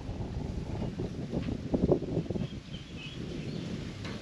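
Wind buffeting the microphone: an uneven, low rush of noise.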